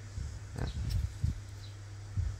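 A man's short grunt-like 'à' filler sound, with a few faint handling knocks from the board being turned over and a low steady hum underneath.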